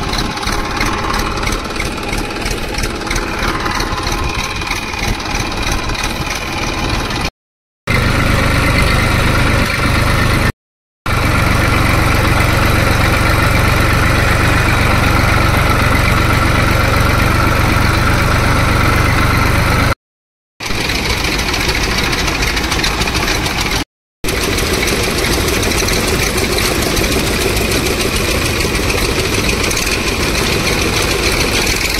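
Engine of farm machinery running steadily at the groundnut harvest. The sound breaks off suddenly a few times, and between about 8 and 20 seconds in it has a heavier low hum.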